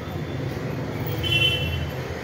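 Steady low rumble of road traffic, with a short high-pitched vehicle horn toot a little past the middle.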